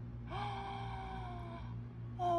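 A woman's drawn-out exclamation of surprise, an "ooh" or "whoa", held for about a second and a half on one slowly falling pitch.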